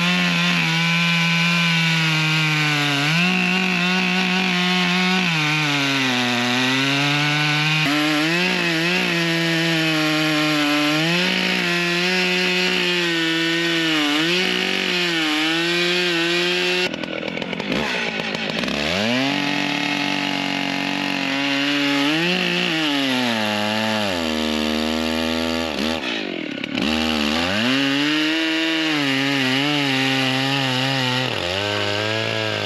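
Large Stihl Magnum two-stroke chainsaw cutting through a big catalpa log at full throttle, its engine pitch sagging and recovering as the chain bites. About two-thirds of the way through the throttle eases off to a low idle, then the saw revs back up into the cut.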